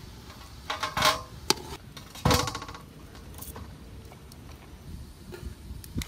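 A wire mesh strainer clinking and knocking against a large metal cooking pot as corn cobs are lifted out of boiling water. There are a few light clinks in the first second and a half, then a louder ringing knock a little past two seconds in.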